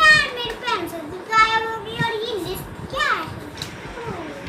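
A child's high-pitched voice making drawn-out, sing-song sounds without clear words, in three stretches.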